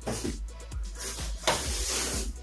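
Cardboard box being opened by hand, its flaps scraping and rubbing in two brief rushes, the louder one about one and a half seconds in, over background music with a steady beat.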